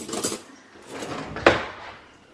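Cutlery clinking as a spoon is taken from an open kitchen utensil drawer, with one sharp knock about one and a half seconds in.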